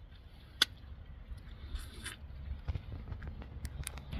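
Faint mouth sounds of a person sucking the pulp off the seeds of a lemondrop mangosteen (Garcinia intermedia) fruit. There is one sharp click about half a second in and a few small clicks near the end.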